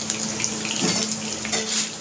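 Chopped garlic, chillies and curry leaves sizzling in hot ghee in a kadai, a steady hiss with small crackles.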